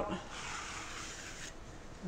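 Dark slide being drawn out of a large-format wet plate holder: a soft sliding scrape lasting about a second and a half, then room tone.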